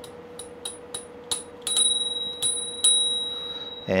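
Handlebar-mounted bicycle bell on an e-bike, flicked by thumb about eight times: a few light dings, then louder rings about a second in, each ringing on with a bright high tone and fading.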